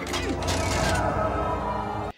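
Film soundtrack of a large lever-operated machine running, with mechanical creaking and whirring over orchestral music and a steady low drone.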